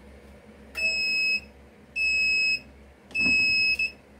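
MPress heat press timer beeping three times, each a steady high-pitched beep of about half a second, signalling that the 30-second press cycle is done. A low knock comes with the third beep as the press is opened.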